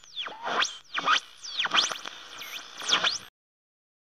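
Electronic swooping sound effect: a rapid string of pitch glides sweeping down and back up over and over, about one swoop every half second, cutting off suddenly a little past three seconds in.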